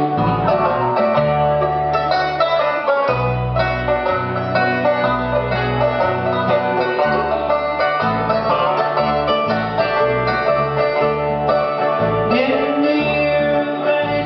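Bluegrass band playing an instrumental break: banjo picking the lead over strummed acoustic guitar, mandolin and a steady bass line.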